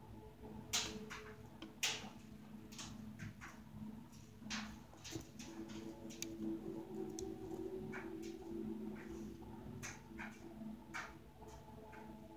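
Small, irregular clicks and taps of a fine beading needle and glass seed beads as the needle picks up beads from a plastic dish and the hands handle beads and thread, two sharper clicks about a second apart near the start. Underneath is a faint steady low hum.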